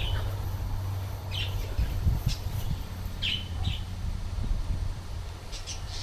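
Birds calling in short, high chirps, a handful of times, over a steady low background rumble.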